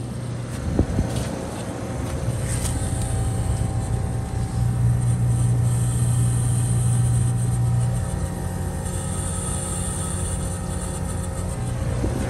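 A 3-ton 2019 Oxbox heat pump outdoor unit running in heat mode: a steady compressor hum with the fan running, the hum louder for a few seconds in the middle. The unit is frosted over and has not gone into its defrost cycle. A brief knock comes about a second in.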